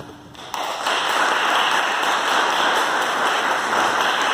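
Audience applause breaks out about half a second in and goes on steadily and densely, after the faint end of the last note.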